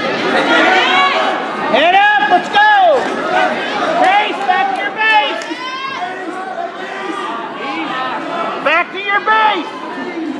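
Several voices calling out and shouting over crowd chatter in a school gymnasium during a wrestling bout.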